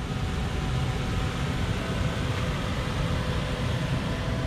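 A Toyota Vios sedan's engine running steadily as the car creeps forward slowly through a tight turn.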